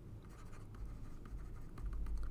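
Faint, irregular scratching strokes of a stylus writing on a pen tablet, over a low hum.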